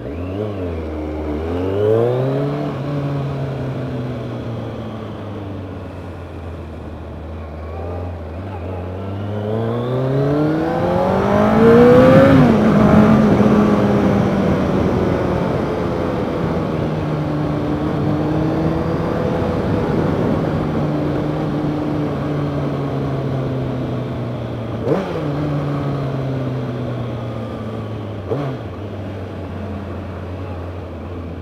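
Kawasaki ZZR1100's inline-four engine pulling away and accelerating hard through the gears, each rising run of revs broken by a drop at the shift. It revs highest and loudest about twelve seconds in, then settles to a steadier cruise with gentle rises and falls in pitch, with two short sharp blips near the end.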